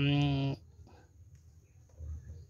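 A man's voice holding one drawn-out syllable at a steady pitch, which stops about half a second in; after that, near silence with a faint low hum.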